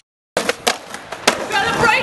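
Skateboard wheels rolling over rough concrete, with three sharp clacks of the board, starting after a brief silence; a voice comes in near the end.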